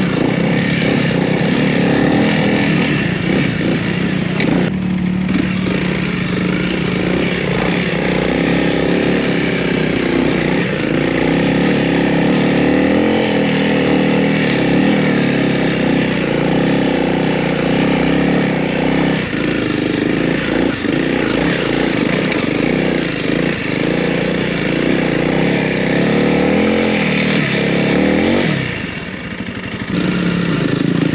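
Honda CRF300L's single-cylinder engine running while the bike is ridden over a dirt track, its pitch holding steady for long stretches and shifting with the throttle at other times. The engine eases off briefly near the end.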